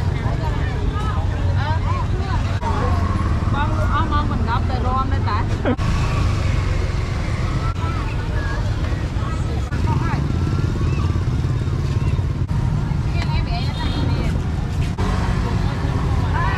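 Busy street-market ambience: people talking nearby over a steady low rumble of road traffic.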